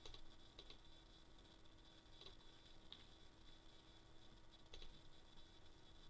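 Near silence with a few faint, scattered computer mouse clicks as extension switches are toggled on, over a low steady hum.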